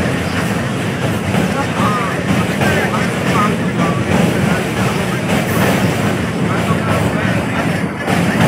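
Train in motion heard from on board: a steady low rumble, with faint voices in the background.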